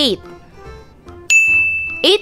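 A single bright, high-pitched ding sound effect that starts suddenly a little over a second in and rings on, slowly fading, over faint background music.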